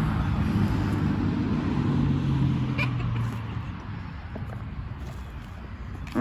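An engine running with a steady low hum that fades away about three to four seconds in.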